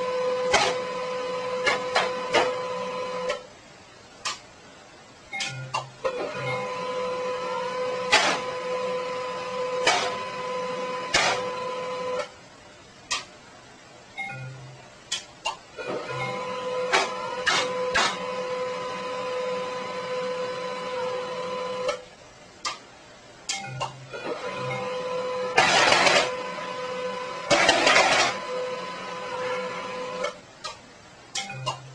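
Desktop printer printing: a steady motor whine in runs of several seconds separated by short pauses, with clicks from the paper feed and carriage. Two louder bursts of noise come near the end.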